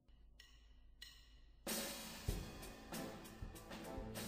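Playback of a raw live band recording: a few faint drumstick clicks, then about two seconds in the band comes in with drum kit and cymbals, at a low recorded level.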